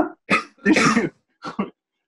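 A man's short, breathy bursts of laughter mixed with coughing, about four bursts in two seconds.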